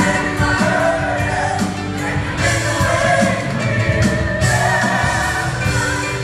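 Gospel choir singing with a female lead vocalist over instrumental backing, a steady, full sound with no break.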